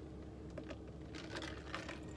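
Someone drinking iced coffee from a plastic cup: a few faint clicks and gulping sounds over a faint steady hum.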